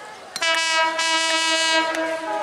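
Bangladesh Railway diesel locomotive's horn sounding one long, steady blast. It starts about half a second in and holds to near the end.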